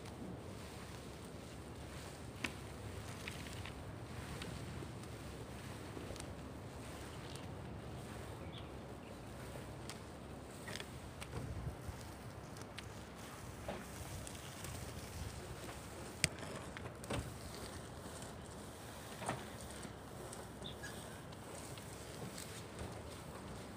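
Steady low outdoor rumble with scattered faint clicks and knocks, one sharper click about sixteen seconds in.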